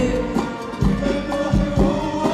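Live Arabic song with orchestral accompaniment: a male voice singing over strings, with percussion strokes about twice a second.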